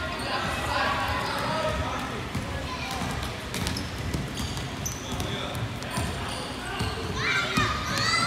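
Basketball bouncing repeatedly on a hardwood gym floor, heard in a large indoor hall, with children's voices calling out.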